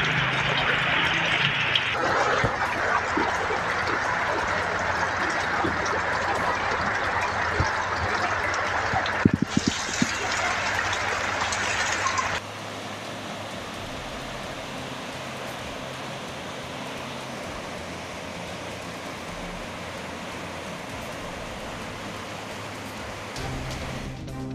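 Rushing floodwater: a steady wash of running water that changes in tone at each cut of the footage. There are a few sharp knocks around nine seconds in, and the sound drops much quieter about twelve seconds in.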